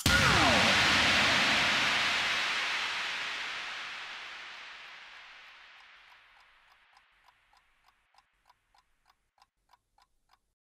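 A rushing noise sound effect with a falling sweep in its first second, fading away over about six seconds, then a faint steady watch ticking, about three ticks a second.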